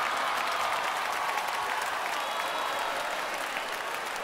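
Theatre audience applauding, a dense steady clatter of many hands that eases off slightly toward the end.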